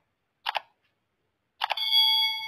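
Sound effects of a subscribe-button animation: a quick double mouse click about half a second in, then another double click near the end followed straight away by a steady, ringing bell-like chime.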